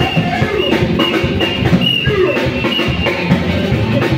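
Live gospel praise band playing: drum kit and hand drums keeping the beat, with guitar and other instruments.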